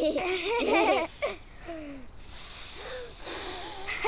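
Young children's voices giggling and laughing, with wavering pitch, over the first second or so, followed by a few short vocal sounds. A soft, steady hiss fills the second half.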